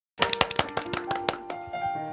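Music starting abruptly: a quick run of sharply struck, ringing notes, about five a second.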